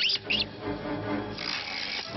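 Background film music with sustained chords, opening with a few quick high chirping sweeps. A faint hiss joins about a second and a half in.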